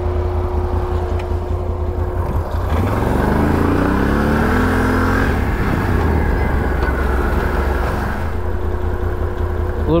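Can-Am Renegade 1000 XMR ATV's V-twin engine idling, then revving up from about two and a half seconds in as the quad pulls away, and running steadily along the trail.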